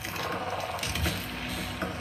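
Trailer soundtrack playing through computer speakers: faint mechanical clicking over a low hum, with a dull low thump about a second in.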